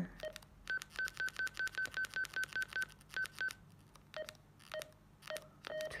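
Key beeps of an Ailunce HD1 DMR handheld radio as its buttons are pressed to scroll through the menu. A quick run of about a dozen short high beeps, about five a second, is followed by two more, then four lower beeps spaced about half a second apart, each with the click of the key.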